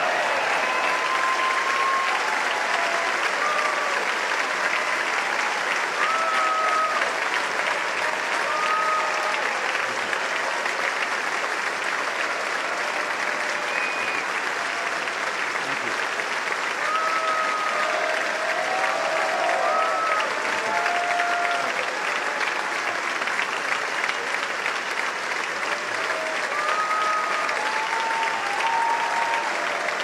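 Large audience giving a long, dense standing ovation in a big chamber: steady applause with scattered voices calling out over it.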